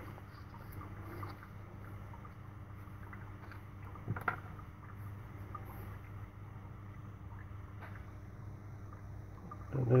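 Quiet steady low hum, with one small click about four seconds in.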